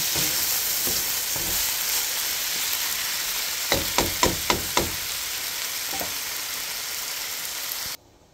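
Beef sausage, diced potatoes and tomato sizzling steadily in a pan as they are stirred, with a quick run of about five knocks about four seconds in.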